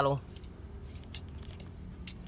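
A few faint metallic clicks as a motorcycle carburetor's throttle slide is worked by hand, over a low steady background hum.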